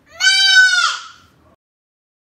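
A single short, high, bleat-like call, wavering as it goes, lasting about a second and trailing off.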